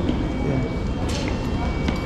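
Footsteps going down a concrete station stairway over a low, steady rumble of station noise and faint background voices, with a sharp knock about a second in.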